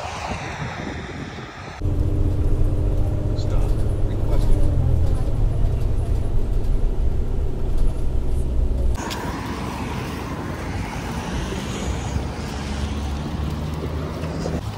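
Deep rumble and steady drone of a city transit bus on the move, heard from inside the passenger cabin, starting suddenly about two seconds in and cutting off around nine seconds. Lighter street traffic noise follows.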